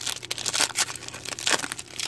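Foil trading-card pack wrapper crinkling and tearing as it is handled and ripped open by hand: a rapid, uneven run of small crackles.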